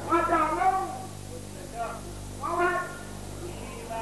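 A high-pitched voice in three short, drawn-out phrases over a steady low electrical hum.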